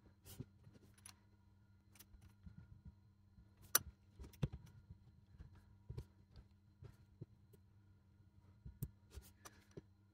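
Faint, scattered small clicks and light knocks as a small brushed DC motor is set back into an opened plastic rotary-tool housing and its metal wire fittings are pushed back onto the motor terminals with a small tool. The sharpest clicks come about four seconds in and again near the end.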